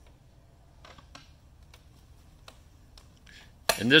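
Faint, scattered metal clicks and knocks from a steel Triforce carpet stretching tool being shifted and set down on carpet.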